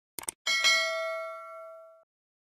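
Two quick mouse-click sound effects, then a notification bell sound effect rings once: a bright ding that fades over about a second and a half and cuts off before it has died away.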